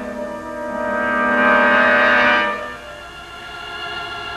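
Orchestral film score: a sustained chord that swells to its loudest about two seconds in, then drops away to a quieter held chord.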